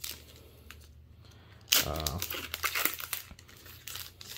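Foil booster-pack wrapper of the Digimon Card Game being torn open and crinkled, in short bursts; the loudest comes a little under two seconds in.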